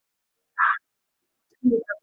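Dead silence on the video-call line, broken by one brief short sound about half a second in; near the end a woman starts speaking.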